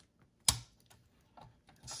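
One sharp plastic click about half a second in, then a few faint ticks, as a car cassette radio's faceplate and circuit board are pushed back onto the metal chassis after the ribbon connector is plugged in.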